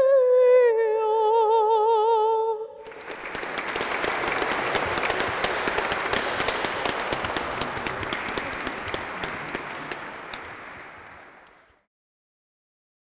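A mezzo-soprano singing unaccompanied ends the song on a held note with wide vibrato, stepping down in pitch. After about three seconds a small audience breaks into applause, which fades out near the end.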